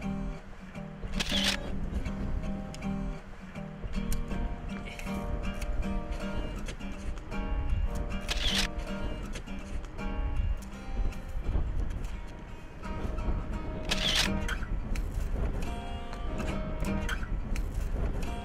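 Acoustic guitar playing a steady run of picked and strummed notes, with a camera shutter clicking three times, several seconds apart.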